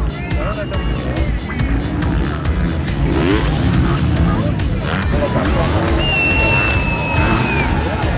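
Dirt bike engines revving as riders race over the dirt jumps, with rising revs about three seconds in. Music with a steady beat and crowd voices run underneath.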